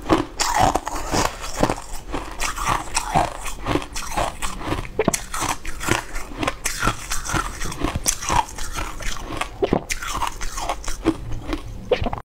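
Close-up chewing of hard, crunchy blue ice-like chunks: rapid, repeated crunches, two or three a second, all through.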